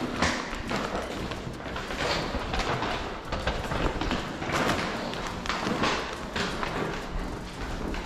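Footsteps walking at a steady pace along a tiled hallway floor.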